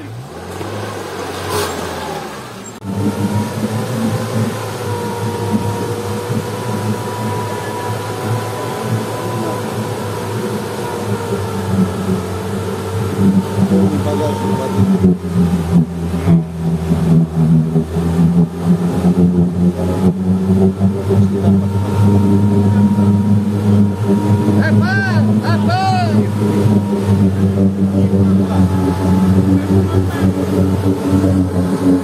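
Soft-top UAZ off-road vehicle's engine running under heavy load as it climbs a steep muddy bank out of a creek, revving harder and more unevenly from about twelve seconds in.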